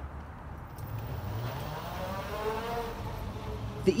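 Electric four-wheel mobility scooter driving off, its motor whine rising and falling in pitch over a steady low hum.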